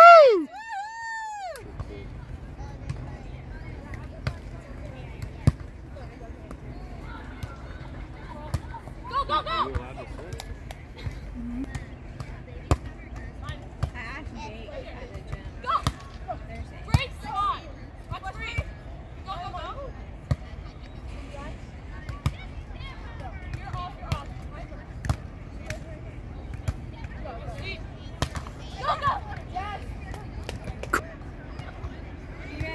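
Beach volleyball rally: a cheer of "woo!" right at the start, then short sharp slaps of hands and forearms on the ball at irregular intervals, with brief distant players' calls, over a steady low rumble.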